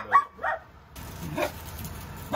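A man's brief laugh, a few short voiced bursts, followed about a second in by an abrupt change to a steady low hiss of room tone.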